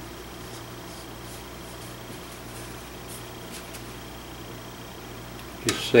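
A steady low hum of shop room tone with a few faint, soft scratches of fingers working around a fluxed front sight on a rifle barrel. A man starts speaking near the end.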